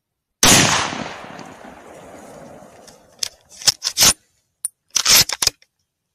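A hunting rifle fires a single shot at wild boars about half a second in, and its report rolls away over the next two seconds or so. A run of sharp clicks and knocks follows near the end.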